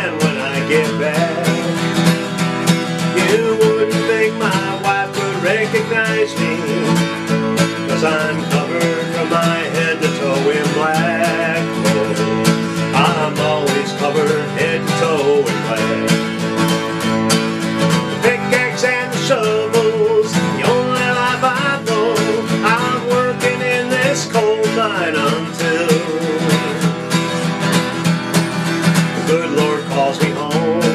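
Acoustic guitar played in an Appalachian folk / bluegrass style, with a man singing along over it.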